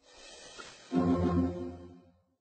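Short closing music sting: a swell of noise rising over the first second, then a loud, low held note that fades away near the end.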